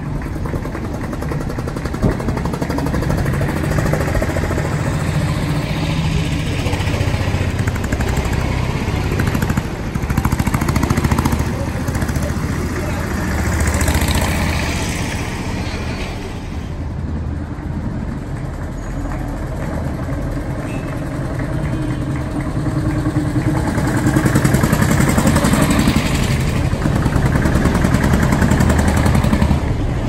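A procession of vintage tractors, cars and a motorcycle driving slowly past, engines running at low speed. The sound swells and fades as each vehicle goes by.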